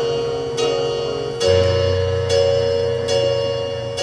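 Electronic keyboard playing a slow passage of sustained chords, a new chord struck a little less than once a second, with a lower bass note coming in about one and a half seconds in.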